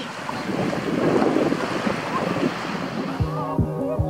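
Wind buffeting the microphone over waves washing on a sandy beach, then background music comes in about three seconds in.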